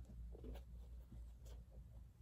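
Faint rustling and scratching of a knit sneaker being gripped and turned in the hand, a few brief scrapes over a low room hum.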